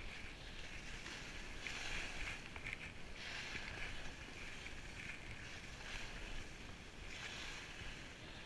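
Skis hissing and scraping over packed snow during a downhill run, swelling into louder rasps with each turn, about three times.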